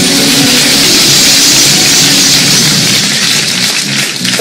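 Game-show opening theme music fading out under a loud rushing whoosh that swells over the first couple of seconds and dies away near the end.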